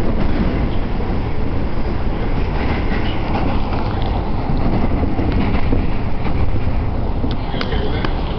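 Passenger train running, heard from inside the carriage: a steady, loud rumble of wheels on rails, with a few light clicks near the end.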